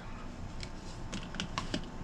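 A handful of light clicks and taps as a plastic bouillon jar is handled and set back on a cabinet shelf, several small knocks close together.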